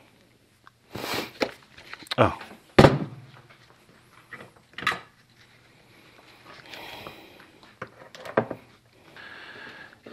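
Hand tools being put down and picked up on a workbench: a few separate knocks and clicks, the loudest about three seconds in.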